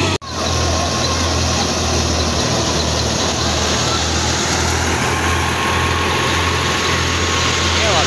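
Wheat thresher running at harvest: a steady low pulsing drone under a broad even hiss, with a faint thin whine above it. The sound cuts out for an instant just after the start.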